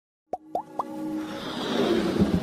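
Animated logo intro sound effects: three quick bloops about a quarter second apart, each rising in pitch, then a swelling rush of noise building up.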